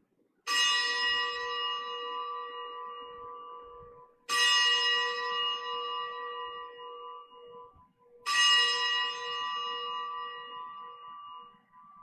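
Altar bell struck three times, about four seconds apart, each stroke ringing clearly and fading slowly: the consecration bell marking the elevation of the chalice at Mass.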